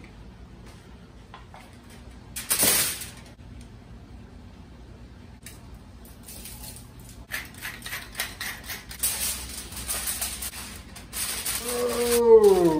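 Aluminium foil crinkling as it is folded over a baking tray, a dense run of irregular crackles over the last few seconds. Earlier, about two and a half seconds in, a single brief rushing noise.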